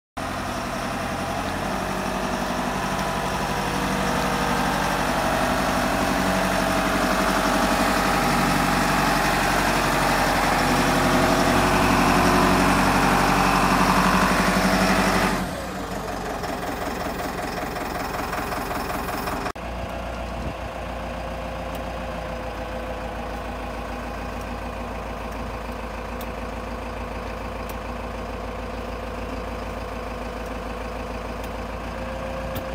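Tamrock Robolt 07 rock bolter's engine running steadily. About halfway through it drops abruptly in level, changes once more a few seconds later, then runs steadily at the lower level.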